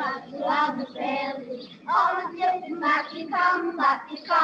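Children singing a Scots street-game song, heard through an old 1952 reel-to-reel tape recording.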